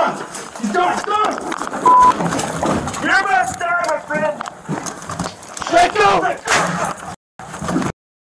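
Raised voices and scuffling during a close-quarters struggle, picked up by a police body camera, with a brief steady bleep tone about two seconds in. The sound cuts off just before the end.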